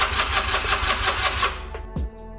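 Electric starter cranking the Honda Rebel 250's air-cooled parallel-twin engine: a rapid, rhythmic whirring that stops about one and a half seconds in without the engine catching. The bike has sat in storage too long, and the owner puts the no-start down to a gummed-up carburetor.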